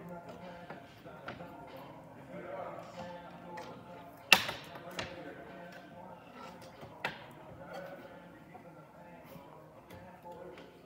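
Sharp knocks as the folding legs of a cabinet bed's fold-out platform are swung up and set into place: the loudest a little over four seconds in, a lighter one just after, and another about seven seconds in, over background music and faint voices.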